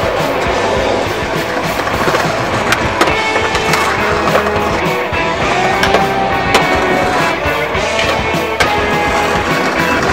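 Music over skateboard sounds: wheels rolling and a few sharp clacks of the board.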